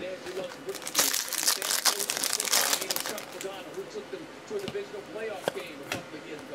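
A foil trading-card pack wrapper being crinkled and torn open, a dense crackling tear from about a second in that lasts roughly two seconds, followed by lighter rustles and clicks of the cards being handled.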